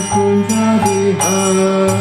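A man chanting a devotional mantra to harmonium accompaniment, in long held notes. Small hand cymbals strike a steady beat about every two-thirds of a second.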